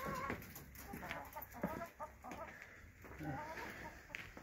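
Domestic hens clucking in short wavering calls, mostly in the first second and a half, with a couple of sharp knocks.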